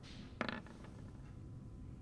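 A brief, faint creak about half a second in, over quiet room tone.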